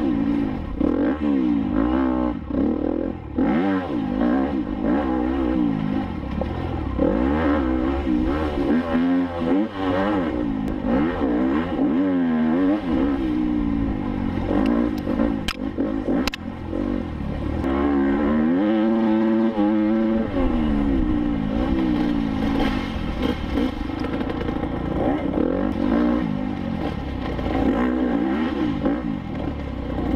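Enduro motorcycle engine ridden hard on a rough dirt track, its pitch rising and falling over and over as the throttle is opened and closed and the gears change, heard from the rider's helmet camera.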